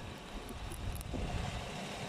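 Steady outdoor background noise: a low rumble with wind on the microphone and a few faint ticks.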